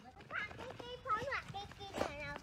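A young child's high-pitched voice making several short, wordless calls that rise and fall in pitch, the last one held steady for about half a second.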